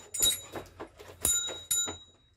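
Light metallic jingling and clicking from the German shepherd's collar and leash hardware, likely including a small bell, as the dog moves its head: a brief jingle near the start and a longer one from a little past a second in, over a few soft clicks.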